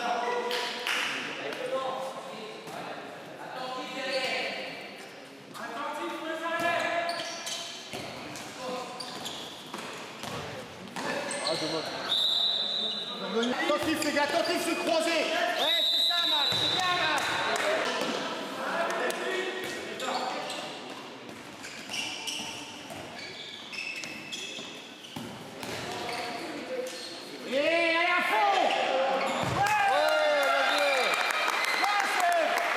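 A handball bouncing on a sports hall's wooden floor amid players' calls and shouts, echoing in the hall. Two short, steady high whistle tones sound about twelve and sixteen seconds in.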